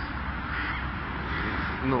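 Outdoor background noise with a low steady rumble and a bird calling, heard in a gap in a man's speech. He starts speaking again just at the end.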